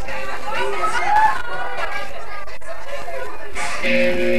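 A group of young people's voices chattering and calling out at once, none clearly understood. Music with steady held notes comes in just before the end.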